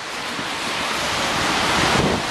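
Steady rushing noise of a rain-soaked city street, rain and traffic on wet roads, slowly growing louder.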